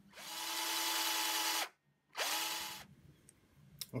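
Small electric motor, like a power tool's, whirring up to speed twice: a run of about a second and a half, then a short burst of about half a second.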